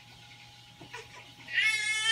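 A baby starting to cry: after a quiet moment, one long wail begins about one and a half seconds in.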